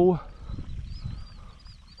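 A man's drawn-out exclamation "oh" trailing off in the first moment, then faint low outdoor background noise.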